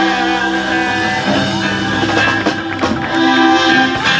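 Live folk-rock band playing an instrumental passage, with accordion, saxophone and guitars over a drum kit.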